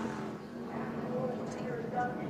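NASCAR stock car engines running on the TV broadcast's track audio as cars spin in a crash, a steady low-level engine drone.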